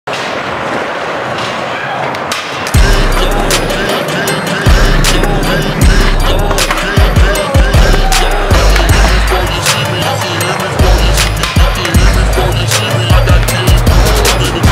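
Skateboard wheels rolling on smooth concrete. About three seconds in, a loud music track with a heavy bass line and drums starts and carries over the board sounds.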